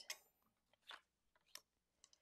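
Near silence with a few faint clicks and rustles from a thin metal cutting die and cardstock being handled on the work surface.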